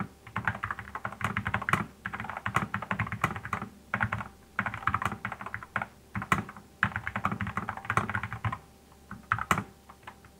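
Typing on a Cooler Master SK622 mechanical keyboard with TTC low-profile red linear switches: fast runs of key clacks in bursts, with short pauses between them.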